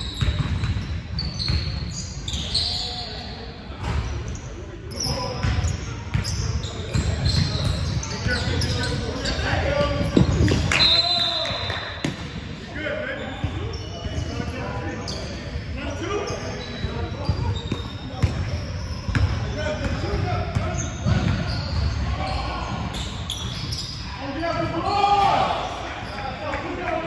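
Basketball game on a hardwood gym floor: the ball bouncing again and again, sneakers giving short high squeaks, and players calling out, all echoing in the large hall.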